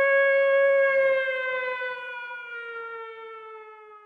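A siren winding down: a single wailing tone that holds, then slowly sinks in pitch and fades away.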